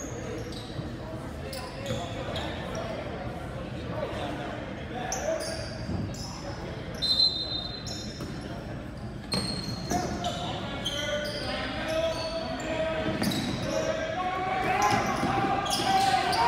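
Echoing gymnasium sound of a basketball game: the ball bouncing on the hardwood floor, short sneaker squeaks and players' and spectators' voices. A referee's whistle sounds for about a second, about seven seconds in, and the voices grow louder near the end.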